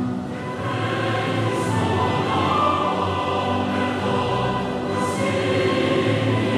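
Choral music: a choir singing long held notes.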